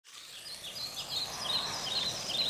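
Birds chirping in quick, repeated high notes over a faint outdoor hiss, fading in.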